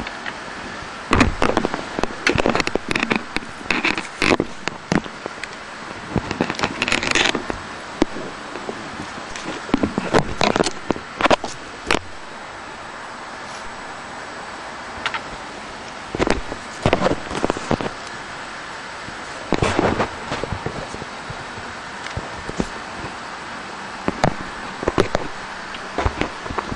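Steady fan hiss of the space station cabin's ventilation, broken by irregular bursts of crackling and sharp clicks that come and go in clusters.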